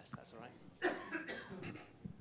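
Faint, indistinct speech away from the microphone, too quiet to make out words, with a cough.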